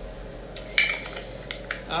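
A run of light clicks and clacks of hard plastic makeup containers being handled and set down on a counter, starting about half a second in.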